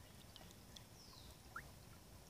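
Near silence: faint outdoor background with a few brief, faint high chirps and ticks, one of them a short falling glide about a second in.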